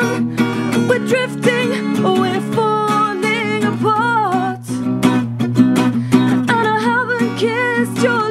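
Live acoustic pop song: a woman singing long, wavering notes over strummed acoustic guitar.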